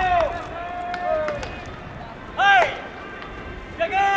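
Baseball players' long, drawn-out shouted calls during infield fielding practice, with one loud rising-and-falling shout about two and a half seconds in. Scattered sharp knocks of the ball are heard between the calls.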